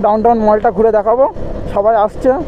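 A person talking, with a low rumble of vehicle and road noise underneath, briefly heard on its own in a pause about a second and a half in.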